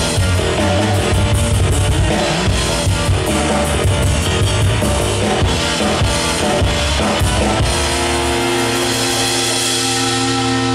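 Live instrumental progressive rock from Chapman Stick and drum kit: a dense, driving tapped riff over busy drumming. About three-quarters of the way through the drums stop and the band holds a sustained final chord that ends the piece.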